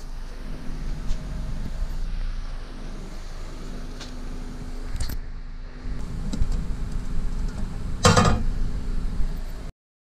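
Paper envelope handled and fed into the pull-out slot of a metal fee drop box, with a loud brief metal clatter about eight seconds in as the slot is worked, over a steady low electrical hum. The sound cuts off just before the end.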